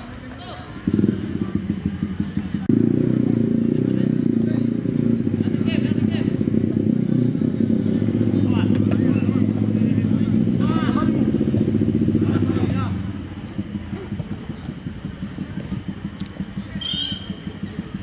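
An engine running close by, a loud, low, fast-pulsing drone that starts suddenly about a second in and drops away around thirteen seconds.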